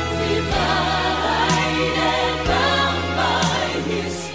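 Contemporary Christian vocal-group song: a choir of voices singing in harmony over a band with sustained bass notes that change twice.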